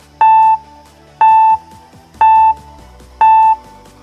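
Electronic timer beeps, four short identical tones one second apart, counting down the pause before a quiz answer is revealed, over quiet background music.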